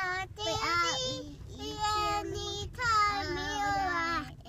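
Two toddlers singing together in three phrases, with long held notes that glide up and down.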